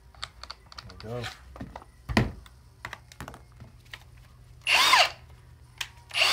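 Small clicks and rattles as an auger bit is tightened into the chuck of a Milwaukee M18 FUEL Hole Hawg right-angle drill, with one sharp knock about two seconds in. Near the end the drill's motor spins up for about half a second, its whine rising and falling.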